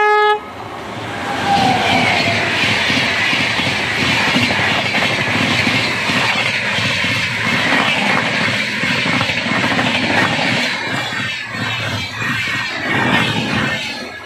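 An electric locomotive's multi-tone horn cuts off just after the start. Then an Indian Railways Rajdhani Express passenger train passes close by with a steady rumble and rush of wheels on rail, and rhythmic clicks of wheels over the rail joints grow thicker near the end.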